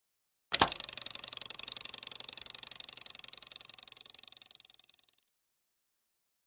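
Intro sound effect: a sudden sharp hit about half a second in, then a bright, fluttering shimmer that fades away over the next four and a half seconds.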